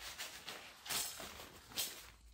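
Rustling of a fabric kite sail being picked up and handled, with louder swishes about a second in and near the end.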